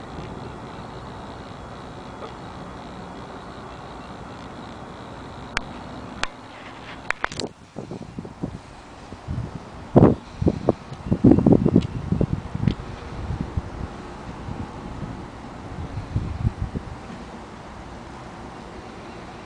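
Steady outdoor background noise with wind on the microphone, broken by a few sharp clicks about six to seven seconds in and then a run of irregular knocks and rustles from about ten seconds in, the loudest sounds here.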